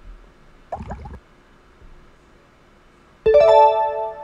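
A bright piano-like chime chord sounds suddenly a little after three seconds in, several notes struck together and ringing out as they fade. It is a quiz sound effect marking the end of the countdown on the question.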